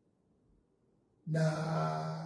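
Near silence for just over a second, then a man's voice holding a long, drawn-out "naaa" at one steady pitch.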